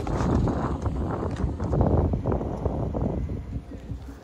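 Wind buffeting the camera's microphone while cycling: a steady low rumble with uneven gusts, fading a little near the end.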